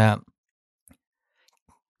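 A man's spoken word trailing off, then near silence with a few faint clicks, one about a second in and two fainter ones shortly before speech returns.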